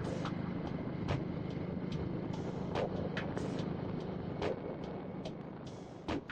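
Motorcycle engine running steadily while riding along a road, a low hum under wind and road noise that thins out near the end, with a few sharp clicks.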